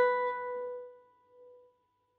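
A single note picked on a gypsy jazz acoustic guitar, the seventh fret of the top string, ringing out and fading away over about a second.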